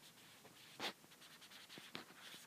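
Faint taps and scratches of handwriting on an iPad's glass touchscreen, a few short ticks with one clearer tap a little under a second in.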